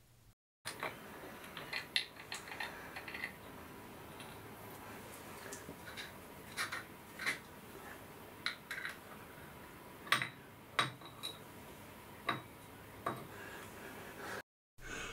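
Small metal parts being handled by hand: light, scattered metallic clicks and clinks as the grease-seal ring is worked off the end of a lathe spindle, with the sharpest knocks in the last few seconds.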